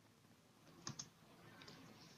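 Near silence, broken by two faint computer clicks a fraction of a second apart about a second in, of the kind made when advancing a slide presentation.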